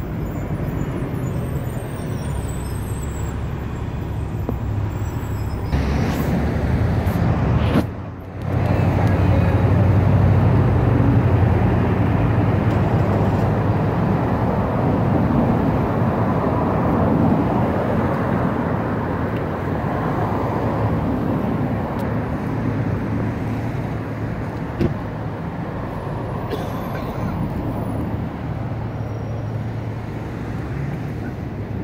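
Road traffic passing on a wet street, a steady rumble of vehicles and tyres with a low hum underneath. The sound drops out briefly about eight seconds in, and there is a single click near the end.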